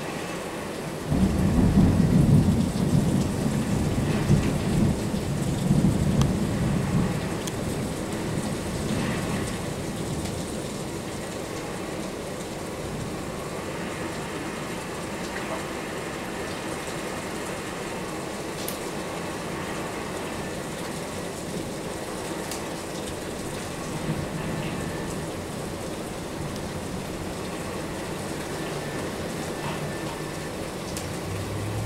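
Heavy rain pouring steadily, with a loud low rumble of thunder that breaks in about a second in and dies away over several seconds.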